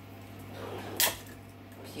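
An egg being broken open over a glass bowl, with one sharp crack of shell about a second in.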